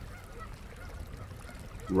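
A pause between spoken phrases with only faint, even outdoor background noise and no distinct sound event.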